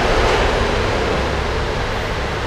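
Steady rushing background noise with no distinct events, easing slightly toward the end.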